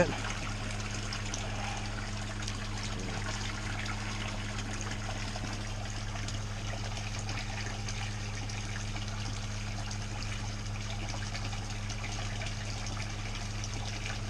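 Steady splashing of water from a pond filter pump's return pipe pouring into the pool, over a constant low hum.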